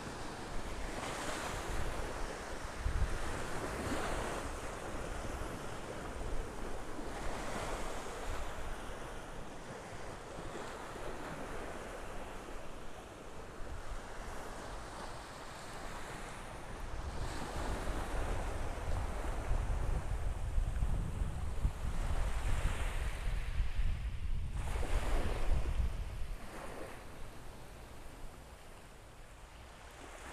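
Small waves washing onto the shore of a shelly beach, swelling and fading every few seconds, with wind buffeting the microphone as a low rumble that grows heavier in the second half.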